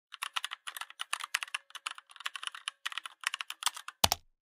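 Computer keyboard typing: a fast run of keystrokes with a couple of brief pauses, as a command is typed at a terminal.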